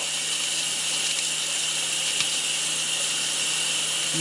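Kitchen tap running steadily into a stainless steel sink.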